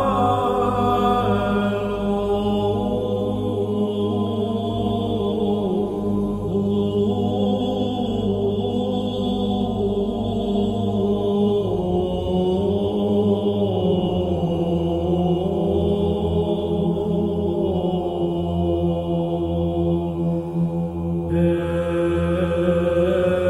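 Slow chanting by low voices in long held notes over a steady low drone, the pitch shifting only gradually; a brighter layer joins near the end.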